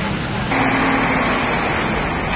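A motor vehicle engine running steadily with street noise. About half a second in, the sound shifts to a denser hiss with a low steady hum.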